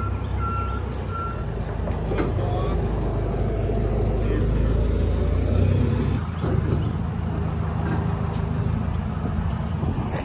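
A nearby vehicle's engine running with a steady low rumble, its reversing alarm beeping a few times a second and stopping about a second and a half in; the rumble eases off a little about six seconds in.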